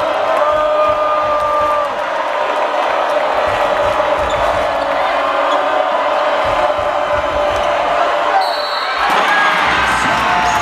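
Basketball being dribbled on a hardwood court amid steady arena crowd noise and voices. The crowd swells into cheering near the end as a shot goes up.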